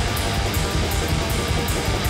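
Raw black metal recording: dense, distorted electric guitar over fast, evenly spaced drum or cymbal hits several times a second.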